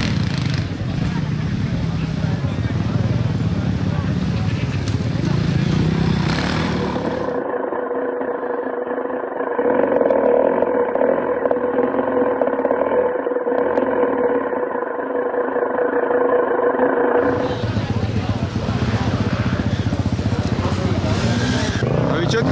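Off-road motorcycle engines running. For about ten seconds in the middle a steady engine note sounds thin and muffled, with no bass or treble, before fuller engine noise returns. People are talking over it.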